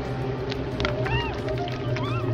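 Film soundtrack: a low droning horror score under two short, high cries that rise and fall, from the woman being forced to drink from a plastic bottle, with a few sharp clicks.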